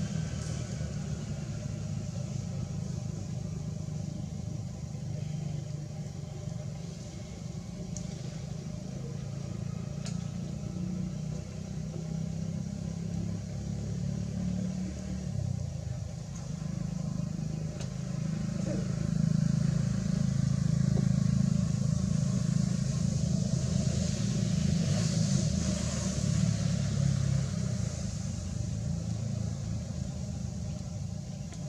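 Low, steady rumble of motor-vehicle engines, swelling louder for several seconds past the middle.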